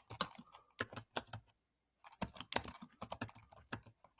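Typing on a computer keyboard: a run of separate keystrokes, a short pause a little before the middle, then a quicker run. It is the sound of backspacing over a typo and typing the sentence on.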